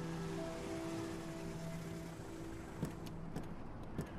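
Soft string music fading out as an SUV pulls up and stops, followed by a thump and a couple of sharp clicks near the end.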